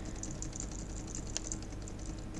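Faint, irregular clicking of computer keys being pressed while on-screen drawing marks are removed, over a steady low hum.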